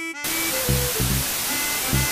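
Loud, steady hiss of television static that cuts in just after the start, over a short music jingle whose low beats and notes continue beneath it.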